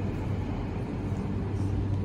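Steady low hum and rumble of an empty underground car park's background noise.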